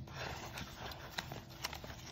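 A few faint, light taps over quiet room noise.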